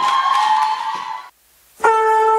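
Audience applause that stops abruptly a little over a second in; after a brief silence, music starts loudly with a long held note near the end, opening a dance performance.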